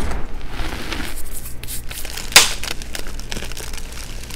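Powdery reformed gym chalk crunching and crackling as it is pressed and crushed, with one louder, sharper crunch a little past halfway.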